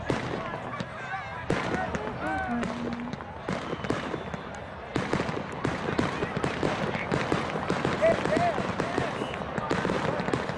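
Firework crackling: rapid sharp pops and crackles that grow denser about five seconds in, mixed with voices.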